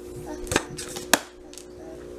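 Two short, sharp knocks on a hard surface, a little over half a second apart, over a faint steady hum.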